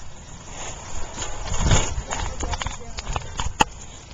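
Handling rustle and rumble with scattered knocks and clicks as a bicycle is set off riding with a hand-held camera. There is a louder rustle about halfway and one sharp click near the end.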